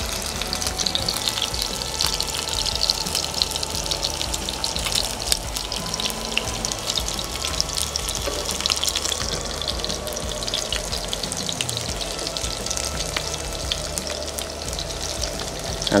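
Panko-crusted lamb chops sizzling in hot oil in a nonstick sauté pan: a steady, dense crackle of frying.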